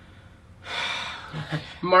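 A man's audible breath, a short rush of air lasting under a second, followed by the start of his speech near the end.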